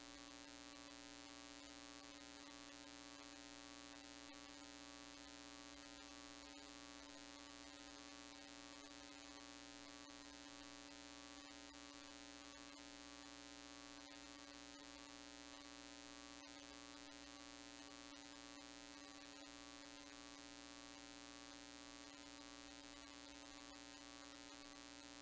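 Near silence: a steady electrical hum with a faint hiss.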